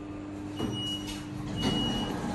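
Passenger lift arriving at a floor: the steady hum of the moving car changes with a clunk about half a second in, a high electronic beep sounds twice, and the doors start sliding open near the end.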